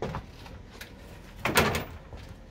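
Metal door fittings inside the body of an old CC 72000 diesel locomotive knocking and scraping: a short knock at the start, then a longer, louder clank with a brief squeak about a second and a half in.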